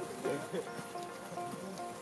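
Background music with long held notes, with faint voices underneath.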